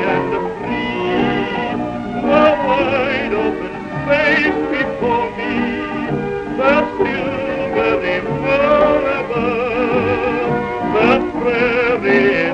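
Male tenor singing a sentimental cowboy ballad with a wide vibrato over a band accompaniment.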